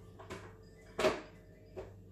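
A single sharp knock about a second in, with a couple of fainter clicks on either side: something handled and set down at a kitchen sink while prawns are being cleaned.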